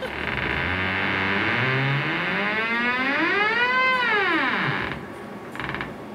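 Eerie electronic sound effect: a wavering tone over a steady hiss slides slowly upward, then swoops quickly back down and cuts off about five seconds in.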